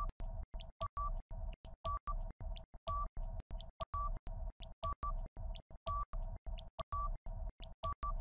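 Quiz countdown timer music: a looping electronic pattern of short pulses, several a second, with two beep tones recurring.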